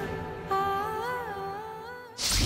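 Background score of a wordless hummed melody: a held note enters about half a second in, bends briefly in pitch around the middle, and fades toward the end.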